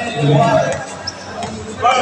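A basketball being dribbled on the court floor, with voices calling out twice: once just after the start and again near the end.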